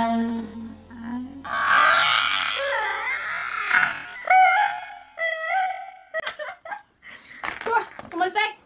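Two young women laughing hard together: a loud, breathless outburst followed by high, wavering laughing cries and short choppy bursts of laughter. A steady held musical note sounds under the first second or so and then fades.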